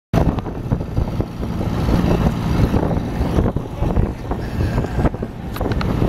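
Wind buffeting the microphone over the rumble of road noise from a moving vehicle, loud and uneven, dipping briefly about five seconds in.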